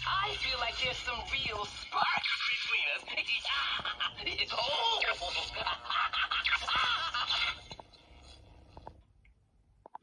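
Spirit Halloween Lil Zappy animatronic clown triggered, playing a recorded voice line with effects through its small built-in speaker, sounding tinny and thin. It runs for about seven and a half seconds and then cuts off.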